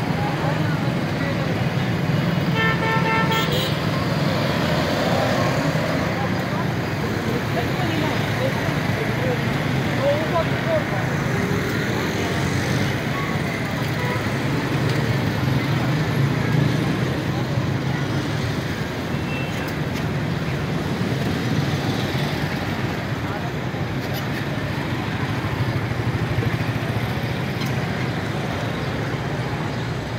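Busy street traffic: motorcycles, auto-rickshaws and cars running, with a steady low engine drone throughout. A vehicle horn sounds once, about three seconds in, for about a second.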